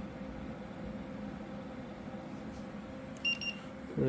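Steady hum of a PC's fans and AIO liquid-cooler pump running under load, with a short high-pitched beep from a handheld infrared thermometer a little over three seconds in.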